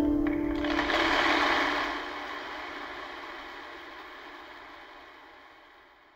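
A held final sung note from the duet ends within the first second, then audience applause rises and fades steadily away by the end.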